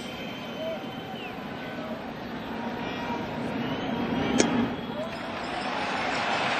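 Baseball stadium crowd murmuring, swelling slowly in loudness, with one sharp pop a little over four seconds in as the pitch smacks into the catcher's mitt for a ball.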